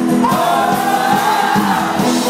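Live Celtic-Americana folk band playing: acoustic guitar, fiddle and electric bass with singing, and a long note held for about a second and a half.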